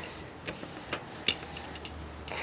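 Thin metal tooling foil giving a few light, irregular ticks and crinkles as fingers press and smooth a wet Lazertran transfer film onto it, working out the water.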